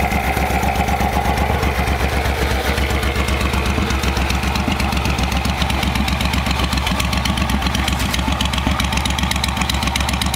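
Suzuki Boulevard VL1500's 1462 cc V-twin idling steadily, with an even low pulse, soon after a start on a cold morning.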